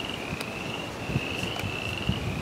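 A steady, high-pitched insect trill held at one pitch, with a faint low rumble underneath.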